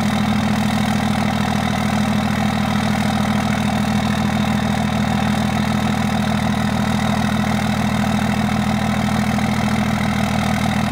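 Cummins 24-valve 5.9 L inline-six turbodiesel in a Dodge Ram 2500 idling steadily, cold, in sub-zero air shortly after a cold start.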